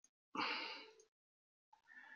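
A person's breath into a close microphone, starting about a third of a second in, lasting about half a second and fading out, with a fainter short breath sound near the end.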